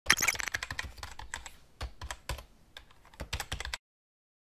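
Computer keyboard typing: a quick, uneven run of key clicks, densest at first, with short pauses, stopping shortly before the end.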